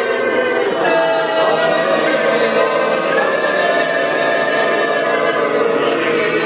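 A group of Bunun and Truku voices praying together in many overlapping parts, holding long notes that blend into one continuous chord: the multi-part vocal harmony known as 八部合音 (eight-part harmony).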